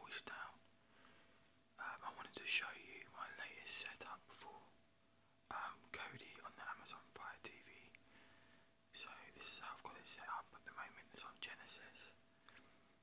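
A man whispering in runs of a few seconds with short pauses between, over a faint steady hum.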